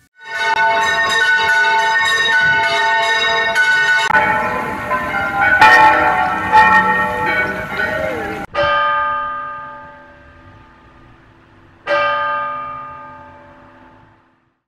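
Church bells ringing: a run of strokes about two a second, then a busier, fuller peal. The ringing breaks off abruptly about eight seconds in; after that, two single strikes each ring out and fade, the second near the end.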